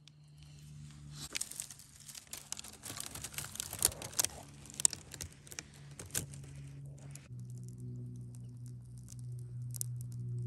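Bundle of dry twigs catching fire over hot coals, crackling with many sharp snaps and pops. A steady low hum runs underneath and grows louder about seven seconds in.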